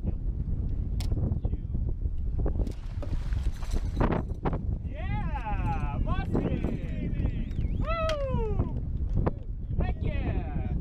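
Wind buffeting the microphone, with excited wordless yells and whoops from the anglers in the second half, one long call falling in pitch near the end. A few sharp knocks are heard along the way.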